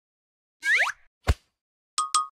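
Cartoon sound effects: a quick upward-swooping whoop, then a single short pop about a second and a quarter in.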